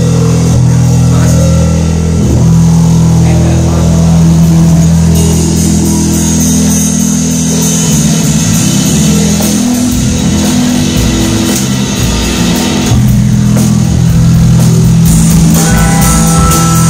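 Rock band music with guitar and drum kit, playing loudly throughout.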